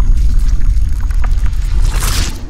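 Sound effects for an animated logo intro: a loud, deep rumble with small scattered crackles, swelling into a whoosh near the end.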